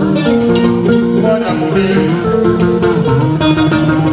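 Live band playing an upbeat groove: guitar melody lines over electric bass and a drum kit.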